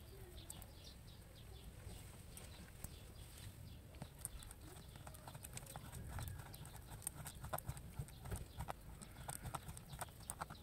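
Small clicks and scrapes of fingers handling coaxial cable braid and twisting a metal F-connector onto it, over a faint low rumble; the clicks come thicker in the last few seconds.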